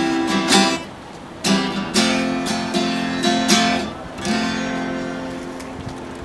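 Two acoustic guitars strumming chords together, a handful of sharp strokes in the first four seconds; the last chord, a little past four seconds, is left ringing and slowly dies away.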